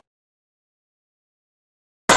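Silence: the soundtrack cuts out completely, with no crowd, punches or commentary.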